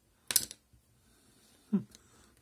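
A single sharp metallic click about a third of a second in, as a screwdriver works at the oscilloscope's small metal front panel.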